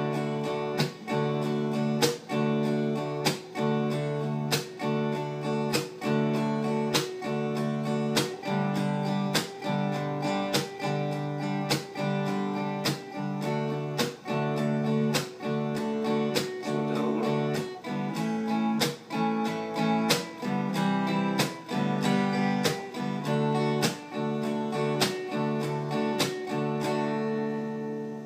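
Gibson acoustic guitar strummed in a steady up-and-down rhythm through chord changes. Regular muted slap strums, made with the heel of the hand, give it a drum-beat feel.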